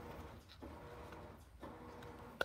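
Faint rustle of trading cards being handled and sorted in the hands, over quiet room tone.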